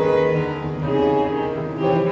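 Violin, cello and piano playing together as a piano trio in a contemporary classical piece, the strings bowing held notes over the piano.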